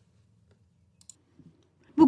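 Near silence in a pause between spoken items, broken by a few faint, short clicks about a second in and again shortly after.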